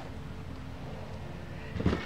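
A single knock near the end as the casting deck is handled and set into place on the boat, over a faint steady background.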